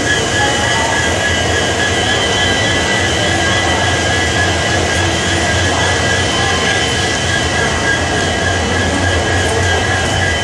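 Steady noise of a passenger train standing at a platform: a constant low hum with a high, unwavering whine above it.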